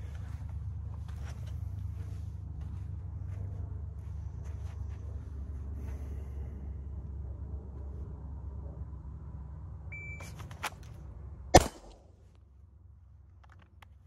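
A shot timer's short start beep, then a quick draw and a single 9mm shot from a Sig P365X pistol about one and two-thirds seconds later. The timer reads the draw-to-shot time as 1.66 s. Under it runs a steady low rumble that stops after the shot.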